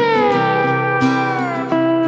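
Epiphone Casino electric guitar played with a metal slide: one long note glides smoothly down in pitch, then a new note lands and is held near the end. Under it runs a steadily strummed acoustic guitar backing.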